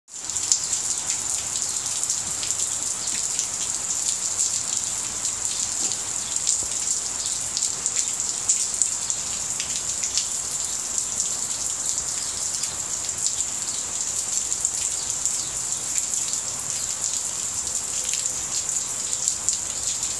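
Steady rain falling on a wet concrete patio: an even hiss with many close individual drop hits scattered through it.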